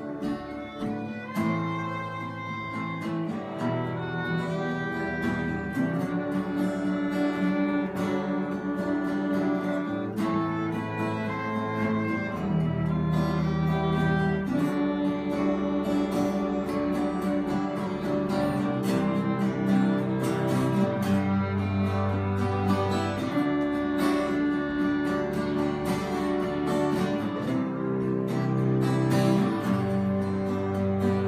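Small acoustic string ensemble playing an instrumental passage: two acoustic guitars strumming chords under a violin and a cello.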